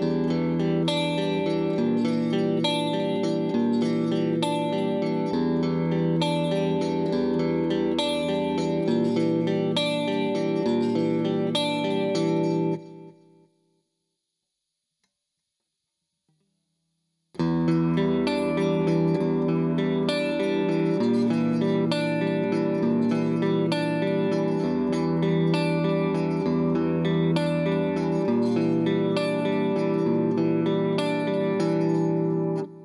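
Grover Jackson Soloist neck-through electric guitar with two Seymour Duncan humbuckers, played with the pickup selector in its center position. The playing stops about thirteen seconds in. After a few seconds' silence it resumes on the front pickup.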